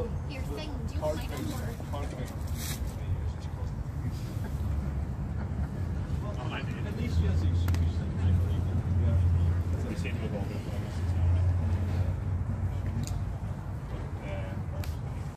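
Indistinct voices of people talking among the crowd, over a steady low rumble that grows louder in two stretches in the second half.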